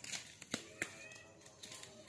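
A few faint clicks and knocks from a long tin-can cannon tube, wrapped in tape, being handed over and lifted upright, over quiet outdoor background.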